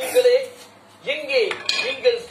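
A man's voice reciting a Tamil poem, with a brief pause about half a second in, heard through a television speaker.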